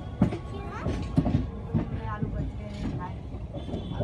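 Indian Railways passenger coach running through a rail yard: a steady rumble with irregular sharp clacks as the wheels pass over rail joints and track.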